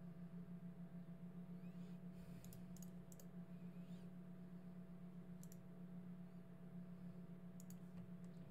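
Faint computer mouse clicks, a handful scattered through, over a steady low electrical hum.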